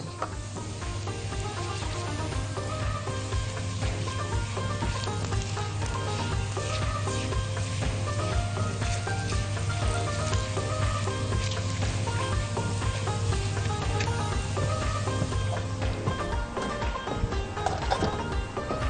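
Background music playing over the sizzle of minced garlic and ground dried coriander frying in ghee in a small pan.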